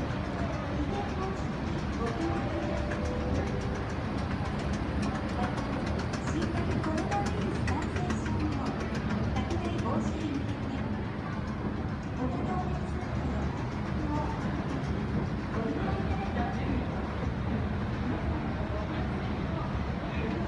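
Department store escalator running with a steady low hum, under indistinct voices and faint background music.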